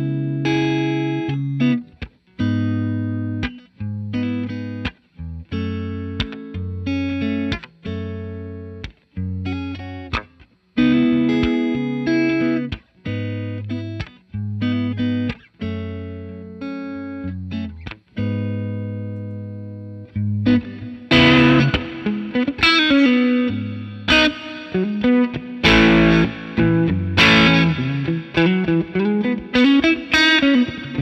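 Electric guitar (Fender American Standard Stratocaster) through a Benson Preamp pedal into a Fender '65 Twin Reverb, the pedal set for a light boost: ringing chords broken by short stops for about twenty seconds, then harder, busier picking that sounds brighter. The amount of drive follows how hard the strings are picked.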